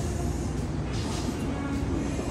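Steady low rumble of a moving vehicle.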